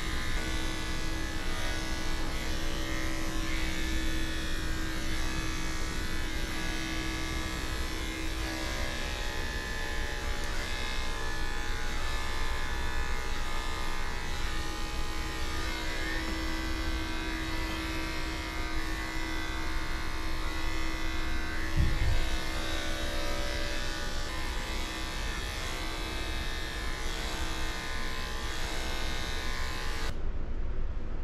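Corded electric dog-grooming clipper running with a steady buzz as it shears a Shih Tzu's coat. A single brief low thump comes about two-thirds of the way through.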